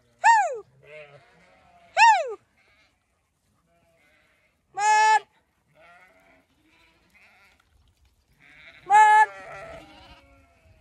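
Zwartbles sheep bleating as the flock runs out through the gate. There are four high-pitched bleats: two short ones that drop in pitch in the first couple of seconds, then steadier, held ones about five and nine seconds in.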